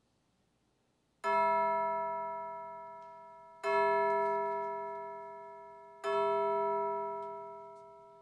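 A bell struck three times, about two and a half seconds apart, each stroke at the same pitch ringing and dying away slowly, marking the start of the worship service.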